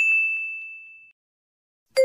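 A bright electronic ding sound effect: one high tone with a sharp start that fades out over about a second, the correct-answer chime as the answer is checked. Right at the end a lower chime begins.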